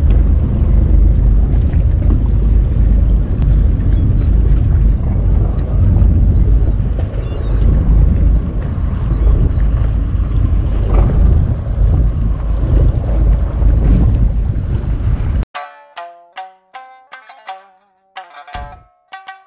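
Heavy, gusting rumble of wind and sea on the microphone aboard a boat on open water, with a few faint high chirps in the middle. About fifteen seconds in it cuts off abruptly and plucked-string music begins.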